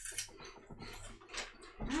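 Crunchy puffed cheese curls (Herr's deep dish pizza cheese curls) being bitten and chewed by several people at once, as quick, irregular crisp crunches. Someone hums "mm" near the end.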